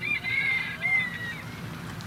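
Birds calling: several thin, high calls in the first second and a half, each sliding slightly down in pitch, over a steady low background of open-air ambience.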